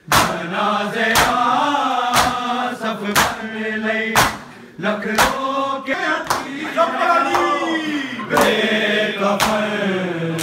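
A group of men chanting a Shia noha (Urdu/Punjabi lament) in unison, marked by rhythmic matam: bare hands striking bare chests together about once a second.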